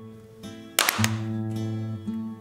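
Acoustic guitar playing, low notes ringing on, with one sharp, bright strum a little before a second in.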